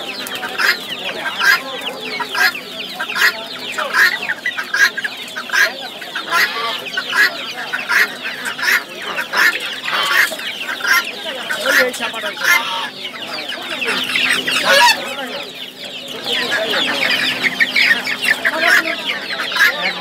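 A crowd of caged chickens, young birds and chicks, calling all at once: dense, rapid peeping and clucking that never lets up, easing off briefly about three-quarters of the way through.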